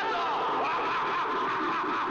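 A person laughing in a run of repeated, pitch-bending bursts.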